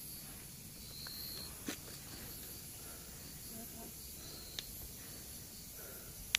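Faint hissing breaths from an agitated brown spotted pit viper (Protobothrops mucrosquamatus), a defensive sign that it is a bit fierce. Two faint clicks come in the middle.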